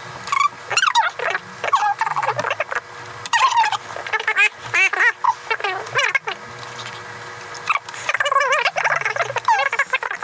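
Two voices sped up into high-pitched, unintelligible chatter, as time-lapsed audio sounds, with quick clicks of plastic building pieces handled on a table.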